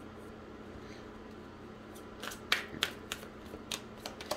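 Quiet room noise, then from about halfway a series of about six short, sharp clicks from tarot cards being handled and drawn from the deck.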